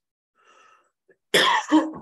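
A man's short double cough about a second and a half in.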